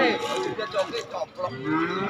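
Cattle mooing, a low call falling in pitch at the start and another starting near the end.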